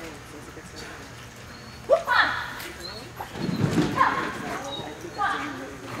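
A dog barking in short, sharp, rising yips while running an agility course, mixed with the handler's shouted cues.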